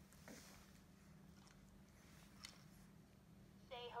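Near silence: steady low room hum with a few faint soft rustles. Right at the end a high, wavering voice begins.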